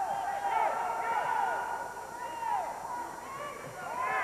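Indistinct shouting from coaches and spectators in a gym during a wrestling match: short calls that rise and fall in pitch, over a low hubbub.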